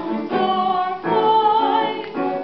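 Mezzo-soprano singing a musical-theatre song with piano accompaniment: one note, a brief break about a second in, then a longer held note with vibrato.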